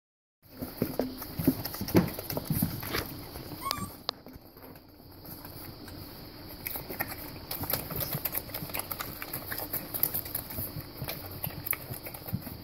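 A litter of puppies suckling at once from their mother dog, a rapid, irregular run of smacking and clicking sucks, really loud.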